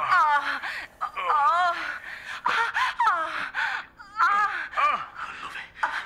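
Sexual moaning and gasping played back from a tape recording: a series of drawn-out moans whose pitch wavers up and down.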